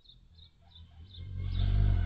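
A hummingbird gives a quick series of high chip notes, about four a second, then a loud low buzzing wing hum swells up and fades away within about a second as a hummingbird flies close past.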